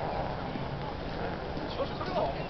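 Crowd of pedestrians walking past: indistinct chatter and footsteps on paving, with a few nearer voices near the end.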